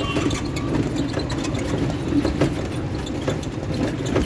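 A motor vehicle running steadily, heard as a continuous low rumble with scattered light clicks and rattles.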